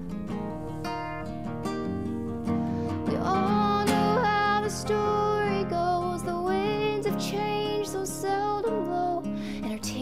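A solo acoustic guitar being played, with a woman's voice coming in about three seconds in and singing long held notes over it.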